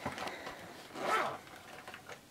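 The zipper of a clear plastic makeup pouch sliding in one short rasp about a second in, amid rustling of the pouch as it is lifted and handled.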